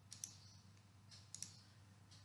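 Faint computer mouse clicks in two quick pairs, one right at the start and one about one and a half seconds in, over a low steady hum.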